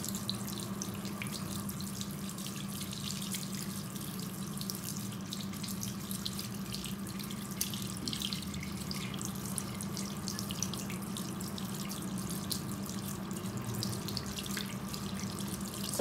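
Tap water running steadily into a ceramic washbasin, splashing over hands being rinsed under the stream as dried henna paste is washed off.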